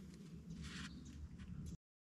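Faint outdoor background noise with a low rumble and light hiss, cutting off abruptly to complete silence near the end.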